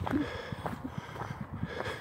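Footsteps on a loose dirt and gravel track, a string of irregular crunches as the walker heads downhill, with a short breath from the walker just after the start.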